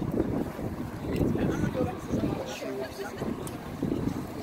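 Wind noise on the microphone, with indistinct chatter from nearby spectators.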